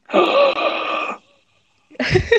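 A person's wordless, breathy vocal sound lasting about a second, with a wavering pitch, followed near the end by the voice starting up again.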